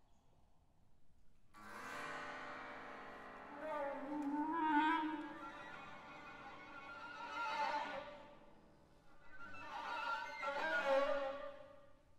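Contemporary chamber music: after about a second and a half of near silence, sustained, wavering notes led by bowed strings (violin and cello) come in and swell three times.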